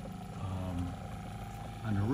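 Shurflo water pump running with a steady hum as it pumps water through the filter system into the tank.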